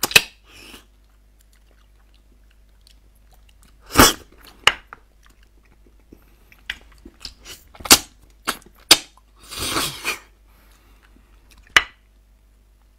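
Close-miked eating sounds of beef bone marrow being sucked from the bone and chewed. They come as separate sharp wet smacks with quiet gaps between, the loudest just after the start and about eight seconds in, and a longer, rougher sound around ten seconds in.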